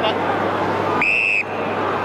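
A single short blast of an umpire's whistle about a second in, over the steady noise of the crowd.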